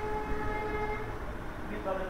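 A horn sounding one steady note, stopping about a second in, over a low rumble.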